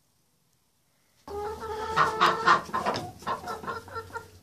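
Quiet, then about a second in chickens start clucking, a run of clucks that is loudest in the middle, over a low steady hum.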